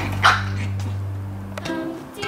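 A Maltese dog gives one short bark while playing, over background music with a steady low note.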